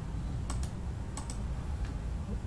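Computer mouse clicking: sharp clicks in quick pairs, a few times, over a low steady hum.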